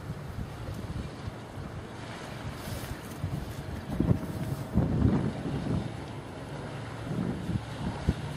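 Wind buffeting the microphone over a low steady rumble, with the strongest gusts about four to five seconds in.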